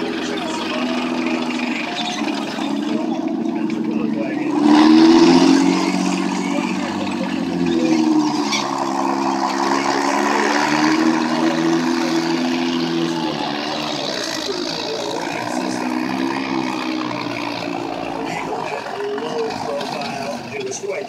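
Military vehicle engines running steadily with a low, even engine note, swelling louder about five seconds in as the vehicles move past.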